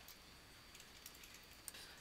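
A few faint computer keyboard clicks over near-silent room tone.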